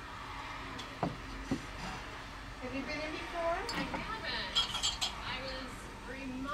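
Two light knocks about a second in as a small clay pottery vase is set down on a wooden shelf, then light glass clinks as old glass bottles on the shelf are handled and one is picked up.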